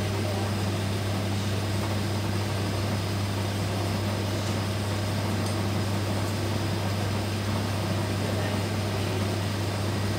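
Steady machine hum from running gas-analyzer equipment, a constant low drone without breaks or changes.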